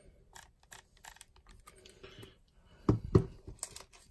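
Small clicks and handling noises from a Nikon DSLR and its manual-focus Nikkor lens being worked by hand, with a louder knock about three seconds in.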